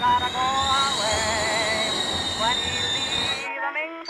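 A loud rushing hiss with a high, steady screeching tone above it and a low rumble beneath, cutting off suddenly about three and a half seconds in.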